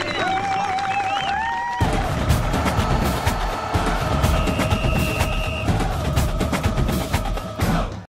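A long, slightly wavering held call, then, about two seconds in, drum-line percussion with snare and bass drums starts abruptly and plays a fast, dense rhythm.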